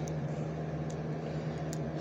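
Steady low mechanical hum, with a couple of faint clicks.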